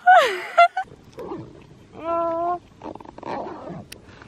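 Short wordless voice sounds: a loud cooing call that rises and falls in pitch at the start, a softer one about a second in, and a held higher note at about two seconds, the kind of noises made over a cute animal.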